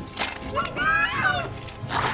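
A sharp crash or smash just after the start. Then a high-pitched voice cries out once, rising and falling, and a second crash comes near the end.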